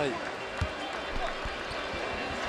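A basketball bounced on a hardwood court: four low thuds at uneven spacing, over steady arena crowd noise.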